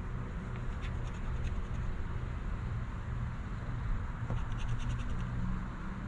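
A coin scraping the coating off a scratch-off lottery ticket in quick short strokes, in a spell about a second in and another from about four to five seconds in, over a steady low hum.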